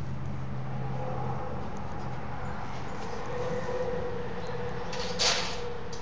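A horse blows out once sharply through its nostrils near the end, a short breathy burst over a steady low hum.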